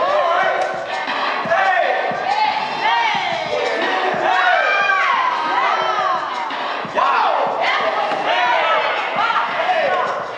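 A small crowd of onlookers shouting and hollering over one another to hype up a dancer, with many voices rising and falling in overlapping cries.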